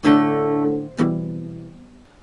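Acoustic guitar: two chords strummed, the first at the start and the second about a second in, each ringing out and fading.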